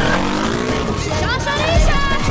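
Animated-film sound mix: a small motor scooter's engine revving, its pitch rising, mixed with voices crying out.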